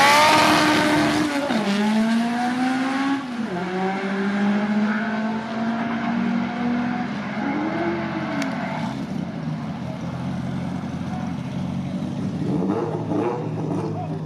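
Drag racing cars launching hard and accelerating away down the strip. The engine note climbs and drops back at each gear shift, about a second and a half and about three seconds in, and then fades into the distance. Another engine starts to be heard near the end.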